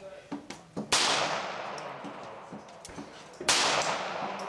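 Two shots from a suppressed .22 LR Ruger Mark II Target pistol, about two and a half seconds apart. Each is a sharp crack followed by a long echo that fades away.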